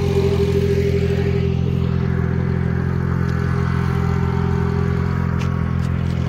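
A vehicle engine idling steadily, a low even drone that holds one pitch throughout.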